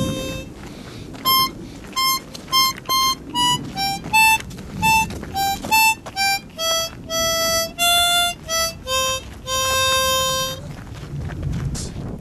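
Harmonica playing a simple tune of short, separate notes that step downward in pitch, ending on a longer held low note near the end.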